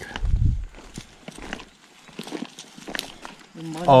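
Footsteps of two people walking over grass and dry twigs, irregular crunchy steps, after a brief low rumble at the very start.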